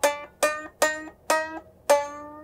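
Gibson Birdland hollow-body archtop guitar picked slowly: five single notes about half a second apart, each decaying, the last left ringing.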